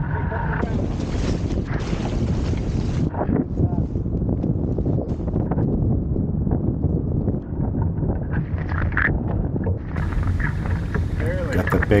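Wind buffeting the microphone, with water rushing and splashing along the hull of a small sailboat under way in choppy water.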